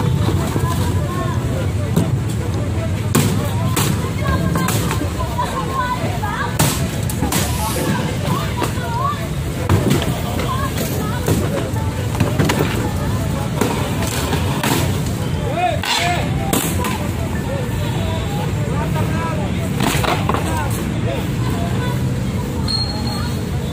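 Wooden carts and boards being broken apart by hand: irregular sharp knocks and cracks of wood, a dozen or so spread over the stretch, over a steady background of voices and street traffic.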